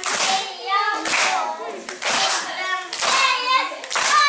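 A young child's high voice reciting a rhymed verse in Hungarian in short rhythmic phrases, with hand claps mixed in.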